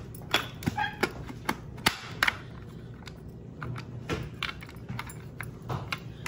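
Hard plastic clicks and knocks from the lid and bowl of a small KitchenAid food chopper being fitted onto its base, a quick run of sharp clicks in the first couple of seconds, then a few more. The lid is not seating properly.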